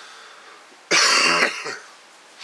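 A man coughs once, a loud, rough cough about a second in that lasts about half a second.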